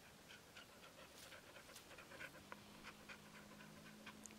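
A dog panting faintly, a quick even rhythm of short breaths at about three to four a second: the dog is panting in the heat.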